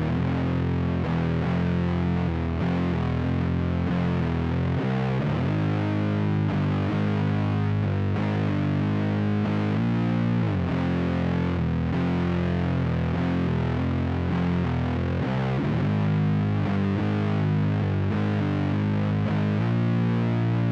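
Heavily distorted electric guitar in C standard tuning, played alone without drums, working through a slow doom metal riff in F harmonic minor. Sustained notes change about every second, with a few slides between them, and the open low string rings out between the notes.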